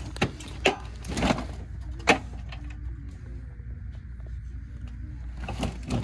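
Several sharp knocks and a short scraping rattle as the bottom of a store shelf is searched by hand, over a steady low hum.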